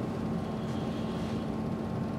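Room tone: a steady low hum with a faint even tone running through it, the background drone of the room's machinery during a pause in the talk.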